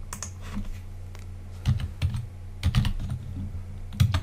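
Computer keyboard being typed on in short, irregular runs of keystrokes, a few of them louder, over a steady low hum.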